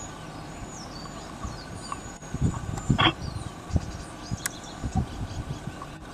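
Small birds chirping in the trees over a steady low outdoor background, with a cluster of low thumps and a short rough burst about three seconds in, and a sharp click a little later.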